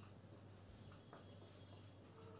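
Faint strokes of a marker pen writing on a whiteboard, over a low steady hum.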